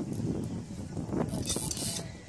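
Wind rumbling on the microphone, with a short hiss near the end.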